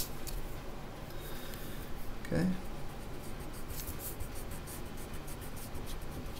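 Pencil scratching on graph paper, a quick run of short strokes in the second half as an object line is darkened in. A steady air circulator hums underneath.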